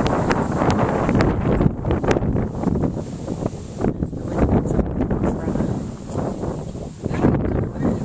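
Wind blowing across the microphone: a loud, uneven noise strongest in the low end, with a few sharp clicks in the first two seconds.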